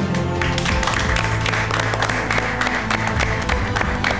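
A few people clapping their hands in applause, over background music with sustained tones. The clapping starts about half a second in.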